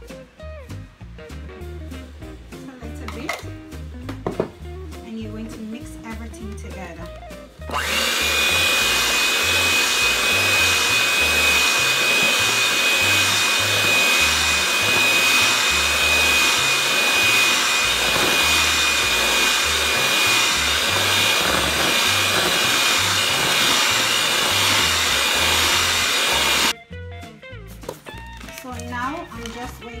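Electric hand mixer running steadily, its beaters working flour into creamed butter, sugar and egg batter for cookie dough, with a steady high motor whine. It starts about eight seconds in and cuts off suddenly a few seconds before the end, over background music with a steady beat.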